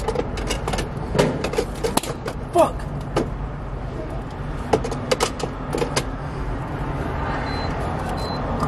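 Inside a parked car: a steady low rumble with scattered clicks and knocks throughout, and two short high beeps near the end.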